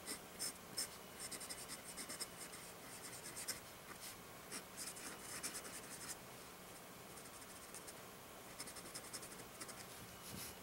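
Gold nib of a 1940s Waterman Stalwart fountain pen scratching faintly across paper as words are written in quick short strokes, with a pause of a couple of seconds before a last flurry of strokes near the end.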